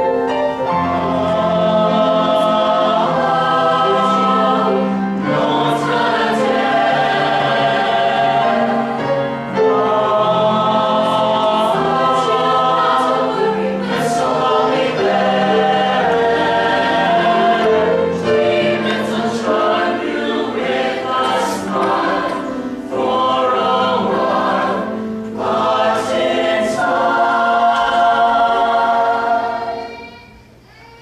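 High school chamber choir singing in harmony: sustained chords with crisp consonants, the phrases broken by short breaths.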